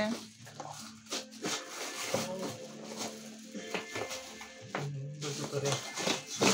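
Clear plastic wrapping crinkling and rustling in irregular bursts as hands handle a new plastic cat litter box, with music playing in the background.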